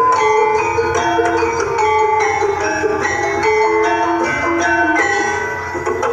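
Javanese gamelan music accompanying a kethek ogleng dance: metallophones play a continuous melody of struck, ringing notes.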